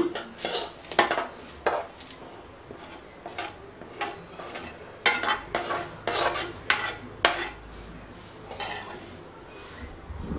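Metal spatula scraping and tapping roasted semolina out of a kadai onto a steel plate: a run of irregular scrapes and clinks that thin out near the end.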